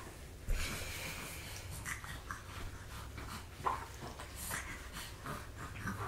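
Small snorts and breathing noises from young babies, a few short separate ones, with rustling of handling near the start.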